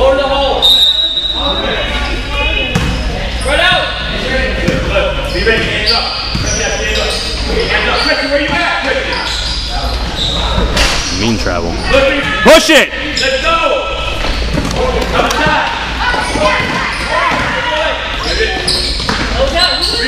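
Basketball bouncing on a hardwood gym floor among the voices of players and spectators, all echoing in a large hall, with a loud brief sound about halfway through.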